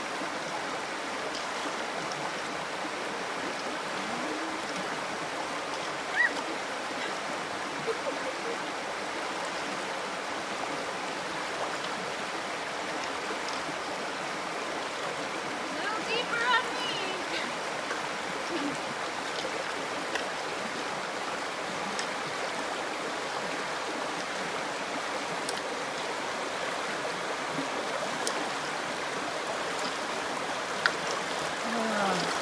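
A shallow river running over rocks, a steady rushing of water. A few brief sharper sounds cut through it, one about six seconds in and a short cluster around sixteen seconds.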